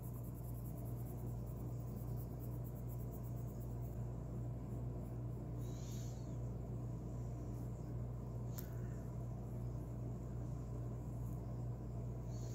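Steady low electrical hum throughout, with a brief faint high rustle about six seconds in and a single sharp click a little later.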